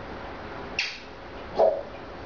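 A pet animal gives two short calls under a second apart: first a high squeak that falls in pitch, then a brief, lower call.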